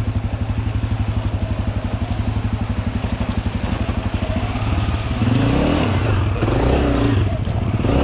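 Dirt bike engine heard from the rider's seat, chugging evenly at low revs, then revved up and down repeatedly from about five seconds in.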